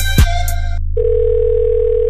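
Hip hop beat with kick drums, whose upper part drops out just under a second in; a steady telephone dial tone then comes in over the continuing bass.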